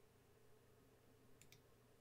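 Near silence with two faint clicks in quick succession about a second and a half in, from a computer mouse being clicked.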